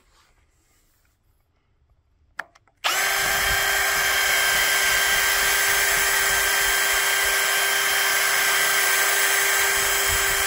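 A cordless drill fitted with a cutting pad loaded with metal polish starts abruptly about three seconds in and runs at a steady, constant speed while buffing chrome.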